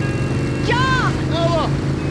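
Motorcycle engine running steadily at highway speed, with two short high-pitched cries from a rider about a second in.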